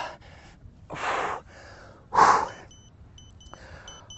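A man breathing hard after jump squats, with two heavy, noisy exhales about one and two seconds in, the second the louder. Faint short high beeps repeat near the end.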